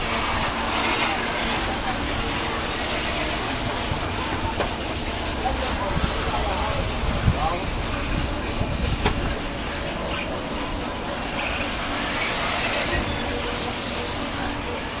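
Radio-controlled racing cars running around a dirt track: a steady mechanical noise of their motors and tyres that holds at an even level throughout.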